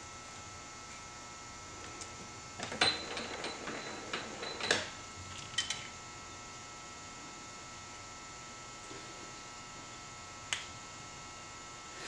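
Light metallic clicks and rattles of a magnetic-base dial indicator being handled and its arm adjusted on a lathe, clustered about three to five seconds in, with a single click near the end, over a faint steady hum.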